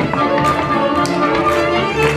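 Moravian cimbalom band with fiddle and clarinet playing lively verbuňk folk dance music, with sharp taps of the dancers' boot slaps and stamps landing roughly twice a second.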